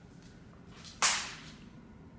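A single sharp crack about a second in, dying away quickly with a short ring from the bare room.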